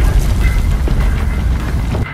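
Hot freshly cast fine silver bar being quenched in a water bath: a steady, loud hiss with a deep rumble of the water boiling against the metal, cutting off at the end.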